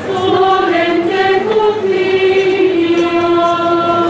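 Religious singing: a long, held melodic phrase sung as one line, its pitch slowly sinking across the phrase.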